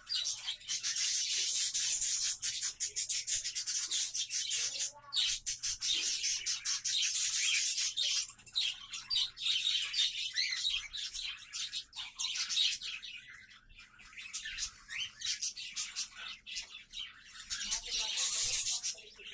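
A flock of cockatiels chirping continuously in high, overlapping calls, thinning briefly a few seconds in and again past the middle.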